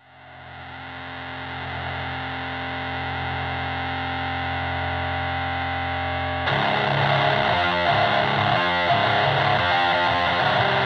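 Opening of a rock band's demo song: a distorted, effects-laden electric guitar fades in from silence and rings on a held chord. About six and a half seconds in the rest of the band comes in and the music gets louder.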